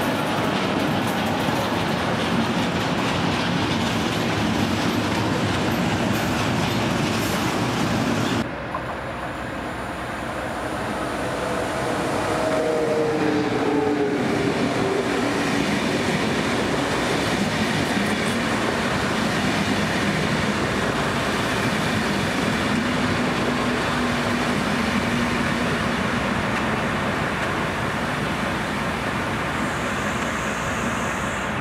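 Electric trains passing at speed: first a locomotive running past with steady rolling rumble, then, after a sudden break, an ÖBB Railjet passing close by, its noise building and carrying a few falling whines as it goes by, then steady wheel-on-rail rumble.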